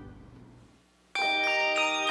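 A pipe organ's final chord dies away in the reverberation, fading almost to silence. About a second in, a handbell choir starts, many bells struck at once and left ringing, with further strikes following.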